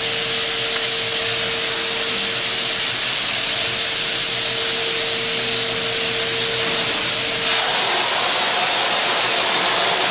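Wagner paint sprayer spraying latex paint: a loud, steady hiss of the spray. A steady hum runs underneath and stops about three-quarters of the way through.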